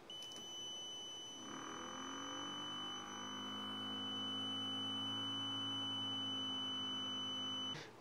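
A circuit buzzer sounds a steady high-pitched tone, signalling that the ultrasonic sensors detect an obstacle. About a second and a half in, a small DC motor driving a wheel spins up with a slight rise in pitch and runs steadily. Buzzer and motor cut off together just before the end.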